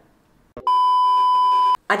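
A single steady electronic beep, one unwavering tone lasting about a second, starting about half a second in after a faint click and cutting off abruptly.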